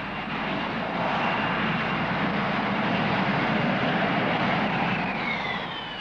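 Rolls-Royce Pegasus vectored-thrust turbofan of a Hawker Siddeley Harrier giving a loud, steady jet roar as the jump jet hovers and descends on jet lift for a vertical landing. Near the end the roar fades and a whine falls in pitch as the power comes off.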